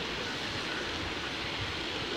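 Steady outdoor background noise with an even rushing hiss and a low rumble, and no distinct events.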